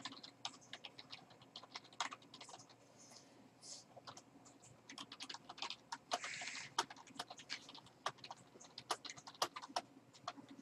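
Typing on a computer keyboard: faint, irregular keystrokes in quick runs, with a short hiss about six seconds in.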